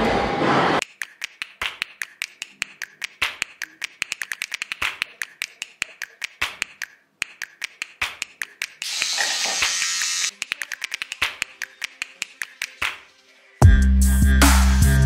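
A long run of sharp, irregular clicks, several a second, with a short burst of hiss about nine seconds in. Loud music with a heavy beat cuts in near the end.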